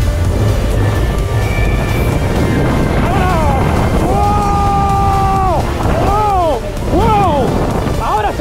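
Wind rushing over the microphone as a Booster fairground ride swings the rider through the air, with riders yelling: short rising-and-falling whoops from about three seconds in and one long held cry in the middle.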